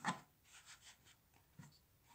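Hands handling a crocheted yarn bootie on a plastic foot form: a short rustle at the start, then faint rubbing and brushing of yarn and plastic against the tablecloth.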